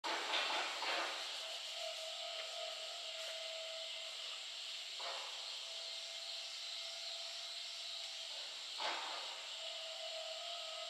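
Steady outdoor background hiss with a faint held tone running through it, and a few short soft sounds about one, five and nine seconds in.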